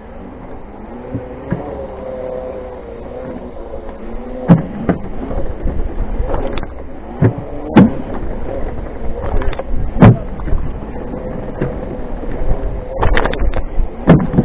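Segway wheels rolling over loose wooden pallets, giving a series of sharp knocks and clatters that bunch up near the end, over the wavering whine of the Segway's drive motors and a low wind rumble on the microphone.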